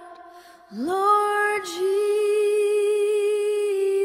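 A woman singing slowly: after a brief pause she slides up into one long held note about a second in.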